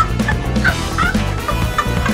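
Background music with a steady bass beat and short high chirps over it.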